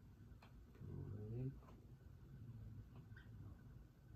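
Quiet room tone with a brief low hum from a person's voice about a second in, and a few soft clicks.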